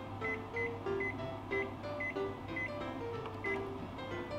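Short high beeps from a Panasonic Bistro oven's control panel, about seven of them at roughly two a second, one for each button press as the temperature setting is stepped up for preheating. Light background music plays underneath.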